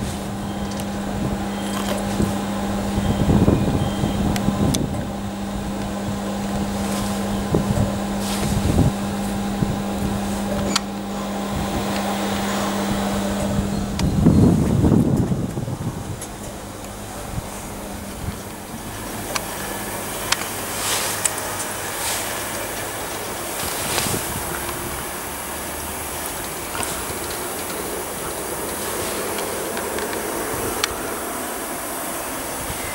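Class 90-hauled passenger train with its Mark 3 driving van trailer: a steady electrical hum while it stands, which stops about halfway through, then the coaches roll away with wheel and rail noise and scattered clicks.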